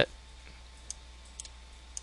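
Two faint computer mouse clicks about half a second apart, over a low steady hum.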